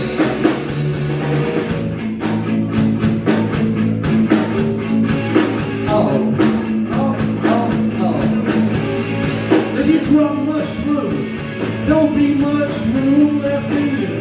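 Live rock band playing: electric guitar, electric bass and drum kit. The cymbal strokes are dense and steady, then thin out about ten seconds in.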